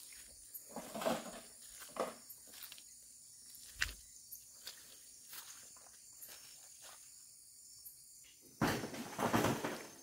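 Soft, irregular footsteps on a wet dirt road, with a steady high chirring of crickets behind. A louder noisy burst of about a second comes near the end.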